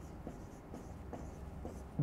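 Marker pen writing on a whiteboard: several faint, short strokes.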